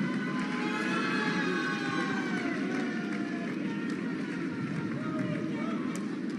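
Audience cheering and applauding, a dense crowd noise with voices calling out over it.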